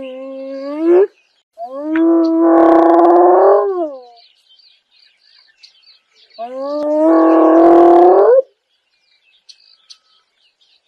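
Spotted hyena whooping: long, low, steady calls that sweep up or down in pitch at their ends. One call ends about a second in, a second runs to about four seconds, and a third comes near the middle. Birds chirp faintly between the calls.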